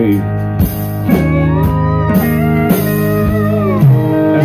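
Live country band playing an instrumental passage: acoustic guitar, electric bass and drums holding chords, with a steel guitar sliding up and down between notes.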